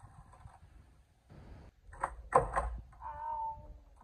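Skateboard clattering against a concrete driveway about two seconds in: a few hard, quick knocks. Just after comes a short pitched voice.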